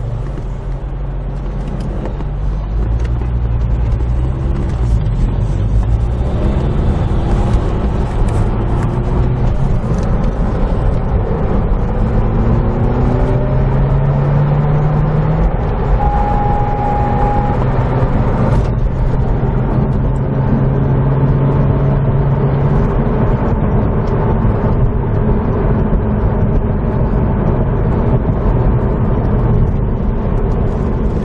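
2009 Corvette ZR1's supercharged LS9 V8 driving the car on the road, heard from inside the cabin with tyre and road noise. Its note climbs as the car accelerates in the middle, then holds steady while cruising. A short steady high tone sounds about halfway through.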